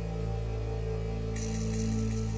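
Ambient synthesizer music from Roland JV-80 synthesizers: sustained low pad chords holding steady, with a new higher note and a bright hissing shimmer coming in suddenly about halfway through.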